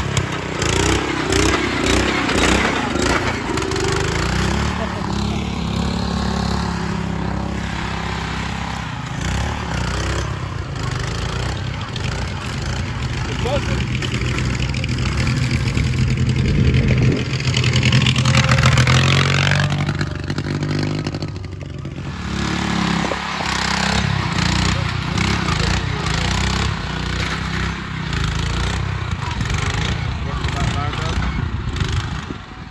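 A modified garden tractor's small engine runs steadily under load as it is driven, with people's voices over it. The engine revs higher a little past halfway, where it is loudest, then drops back.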